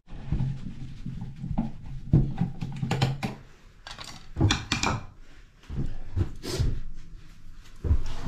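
Handling clicks and knocks as a plastic wall-outlet cover plate is taken off the wall and set down on a bathroom countertop.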